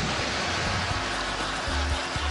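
Lake water splashing and churning as a person falls out of a kayak into it, over background music.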